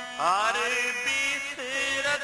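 Shabad kirtan: a male voice enters about a quarter-second in, sliding up into a long held sung note over the steady drone of harmonium, with tabla accompaniment.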